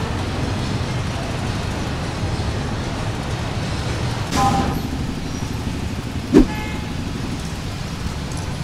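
Steady hum of busy city street traffic from passing cars, motorcycles and trucks, with a short vehicle horn toot about four and a half seconds in. A couple of seconds later comes a brief, louder sharp knock with a short tone, the loudest moment.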